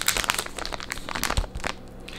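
Clear plastic bait bag of soft-plastic worms crinkling in the hands as it is held up and turned over: a run of quick, irregular crackles that eases off near the end.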